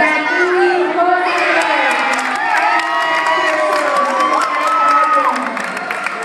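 Tournament crowd shouting and cheering, many voices yelling over one another with several long drawn-out shouts.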